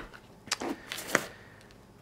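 A few short clicks and light knocks of a camera lens being handled and lifted out of the padded compartment of a camera belt pack, clustered between about half a second and a second and a quarter in.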